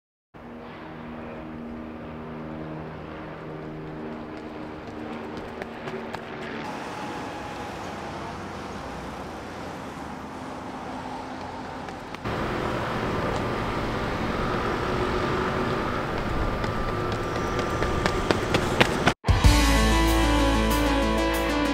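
City road traffic noise mixed with background music, growing louder about twelve seconds in.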